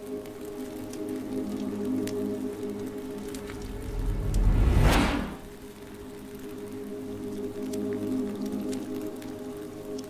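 Dark ambient soundtrack: a steady low drone with a deep whooshing swell that builds to a loud peak about five seconds in and then dies away, timed to a fire flaring up in the artwork's video.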